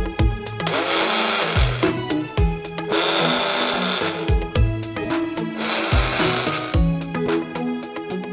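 12V KitchenAid Go cordless personal blender running empty in three short pulses of about a second each, over background music with a steady beat.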